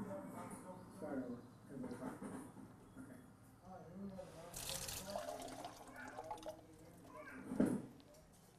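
Faint voices in a small room, with a short burst of hiss about halfway through.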